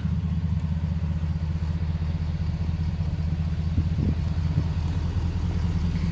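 The 6.7-litre Power Stroke V8 turbodiesel of a 2011 Ford F-350 idling as a steady low rumble.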